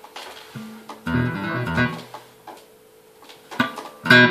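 Electric bass guitar played through an amplifier: a few plucked notes start about half a second in, with a louder group around the first and second seconds, then a lull and another struck note near the end.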